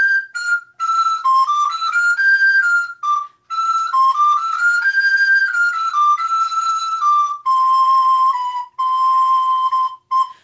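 A recorder playing a stepwise Renaissance dance melody in separately tongued notes, articulated with historic alternating strong and weak tonguings (t, r, d). Short breaks for breath come about three seconds in and twice near the end, and it settles on a long held lower note at the close.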